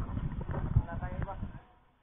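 Footsteps on loose gravel, an irregular knocking crunch, with people's voices talking. Both fade away near the end.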